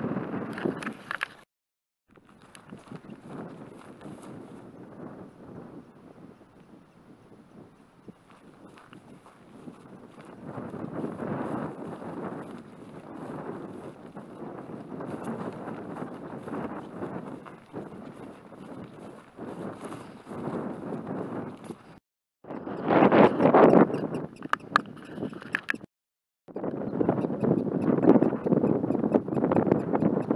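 Footsteps swishing through tall dry prairie grass, with wind buffeting the microphone. It grows louder in stretches near the end and cuts out completely three times, short gaps where wind blasts were muted.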